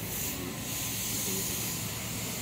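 A steady hiss of noise with no distinct events in it.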